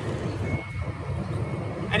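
Wind buffeting the microphone outdoors, a steady low rumble.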